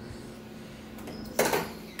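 Quiet room tone with a steady low hum, then one short sharp knock or rustle about one and a half seconds in.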